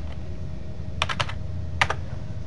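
Typing on a computer keyboard to enter a number into a spreadsheet-style table. One keystroke comes at the start, a quick run of about four follows about a second in, and two more come near the end.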